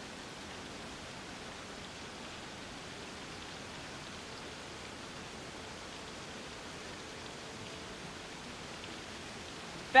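A steady, even hiss of background noise with no other events, of the kind left by outdoor ambience or running water.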